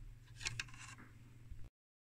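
Faint clicks and a light scrape of a small screwdriver prodding a plastic locking tab on a circuit-board holder, about half a second in, over a low steady hum. The sound drops out to total silence near the end.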